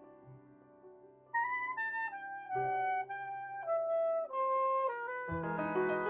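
Soprano saxophone and piano playing jazz: soft sustained piano at first, then, about a second in, the saxophone enters with a slow melody of held notes over the piano, and a deep piano chord sounds near the end.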